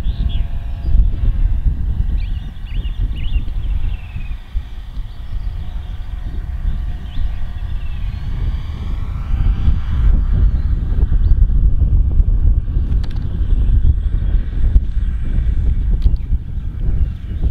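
Wind buffeting the microphone, with the faint whine of an electric radio-controlled model plane's motor and propeller overhead, rising in pitch around the middle as the plane comes closer.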